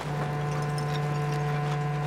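Background music: low sustained notes beginning at once and held steady, like a sombre synth or string pad.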